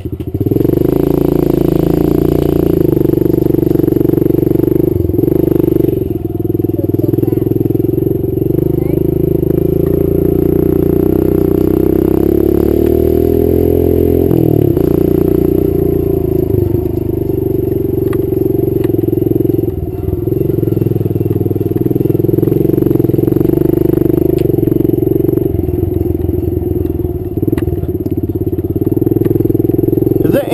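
Kawasaki KLX110 mini dirt bike's small four-stroke single-cylinder engine running under throttle while being ridden, picking up about half a second in. Its pitch rises and falls with the throttle, with a longer rise around the middle.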